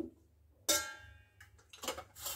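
A metal spoon knocks against a stainless steel bowl, a single short ringing clank about two-thirds of a second in. Softer clicks and a scrape follow near the end.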